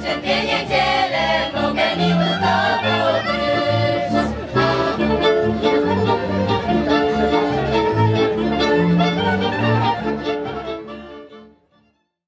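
Polish folk song: voices singing with accordion accompaniment. The music fades out over the last two seconds.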